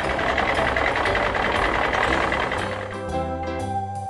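Background music with a noisy truck engine sound effect over it. The engine noise stops about three seconds in, leaving only the music.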